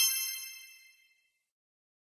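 Bright quiz chime sound effect signalling the correct answer, ringing out and fading away within about a second.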